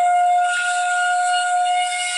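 Bamboo flute (bashi) playing one long, steady held note.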